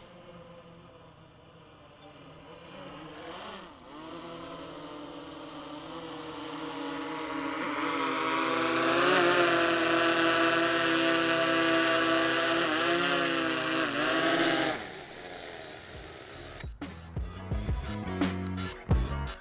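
DJI Mavic 3 quadcopter's propellers buzzing overhead, growing louder and wavering in pitch as the drone comes down to be landed by hand, then cutting off abruptly when the motors stop. Background music begins shortly before the end.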